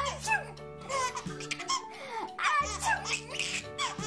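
Babies laughing and giggling in repeated short bursts, over background music with steady held notes.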